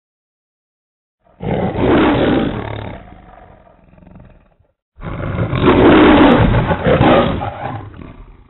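The MGM logo lion roar: a lion roaring twice. The first roar starts just over a second in and fades away. After a short silence, a longer second roar begins about five seconds in.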